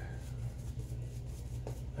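Shaving brush working lather over the stubble of the neck: a run of soft, scratchy brushing strokes over a steady low hum.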